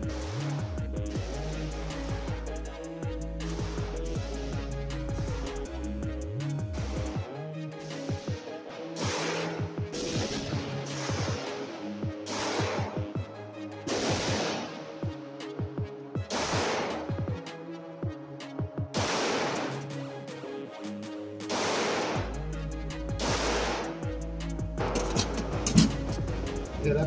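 A string of pistol shots from a Springfield Armory Prodigy firing handloaded rounds, one every second or two through the second half, heard under background music.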